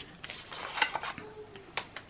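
A tarot card box and deck being handled: a few light clicks and taps as the cards are taken out of their cardboard box.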